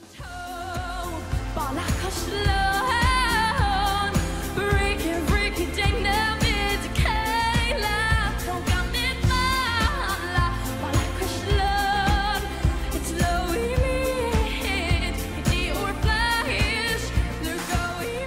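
Young female solo singer performing a pop song live over a backing track with a steady beat. The music rises out of a brief silence at the start, and her voice enters about two seconds in, singing with vibrato.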